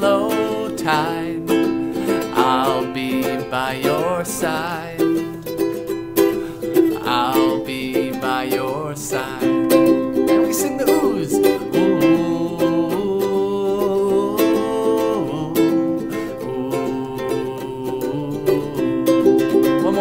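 Ukulele strummed steadily, accompanying wordless sung "ooh"s with a wavering pitch.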